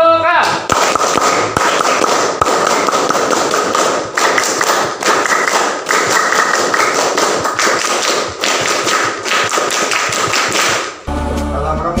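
Applause from a small group, many hands clapping in a dense patter that cuts off suddenly near the end.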